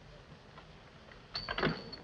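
Saloon swinging doors pushed through, with a few wooden knocks and a brief high hinge squeak about a second and a half in, after a moment of near-quiet room tone.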